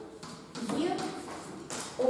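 A woman lecturing, with chalk tapping and scraping on a blackboard as she writes; a sharp chalk tap comes near the end.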